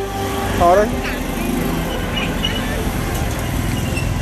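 Street traffic noise from motorbikes riding by, running steadily. A voice calls out briefly about half a second in.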